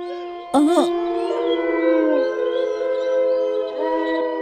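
A short cry about half a second in, then a long, drawn-out howl that slowly sinks in pitch, over sustained background music.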